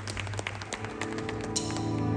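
Live post-punk band's amplified instruments: a held low bass note rings while scattered claps and clicks come from the crowd, and sustained chord tones swell in from about a second in as the next song begins.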